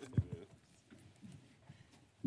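A couple of dull, deep thumps close together about a fifth of a second in, over faint room noise.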